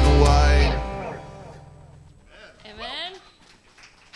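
Live band of guitars, bass and drums ending a song with singing, the music stopping about two-thirds of a second in and the last chord ringing out and dying away over about a second. A short voice sound follows near the three-second mark.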